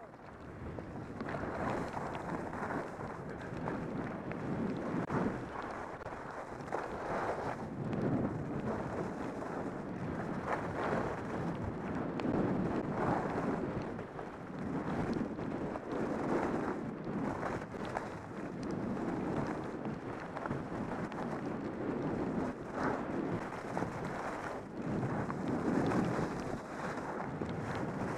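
Wind rushing over a helmet-mounted camera's microphone while skiing downhill, mixed with skis hissing and scraping on packed snow; the rush swells and eases every second or two.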